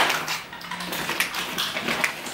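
Rustling and crinkling of a woven plastic shopping bag and the packaging inside it as a hand rummages through groceries, a quick run of irregular crackles.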